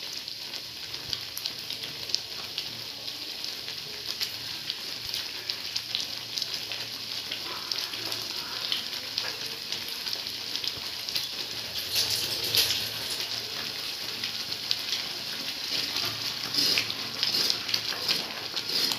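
Semolina halwa mixture boiling in a metal kadai: a steady bubbling sizzle with many small crackles and pops, a little louder about twelve seconds in and again near the end.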